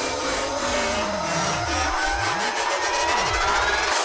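Electronic music breakdown without drums: a hissing noise riser with synth tones sweeping slowly upward, under low bass notes that slide down and back up in pitch.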